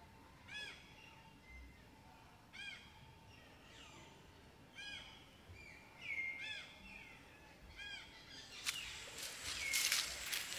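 A forest bird repeating a short call five times, about every two seconds, with other birds whistling around it. Near the end comes a louder rustling noise, the loudest sound here.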